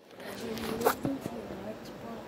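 Rubbing and rustling of a phone's microphone against clothing as it is carried, with one short scrape about a second in.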